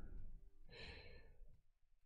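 A faint sigh: one short breath out, about a second in, lasting roughly half a second. Otherwise near silence.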